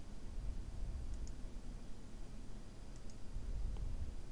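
Faint mouse-button clicks, a quick pair about a second in and another pair about three seconds in, over a low background rumble.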